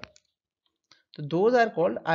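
A person speaking, breaking off for about a second of silence with a few faint clicks, then talking again.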